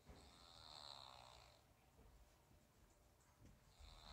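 A faint snore: one raspy breath lasting about a second and a half near the start.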